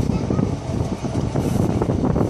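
Railway carriage running along the line: a steady, loud rumble of wheels on rails and carriage noise, heard from the carriage window.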